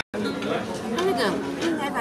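Indistinct chatter of people talking, after a very brief drop-out right at the start.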